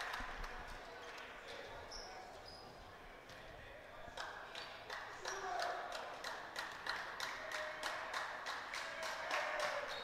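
Basketball bouncing on a hardwood gym floor, a run of sharp bounces starting about four seconds in, heard in a large hall with faint crowd voices.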